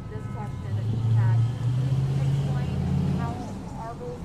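A motor vehicle's engine rumbling low as it goes by, swelling about a second in and easing off after about three seconds, with faint voices behind it.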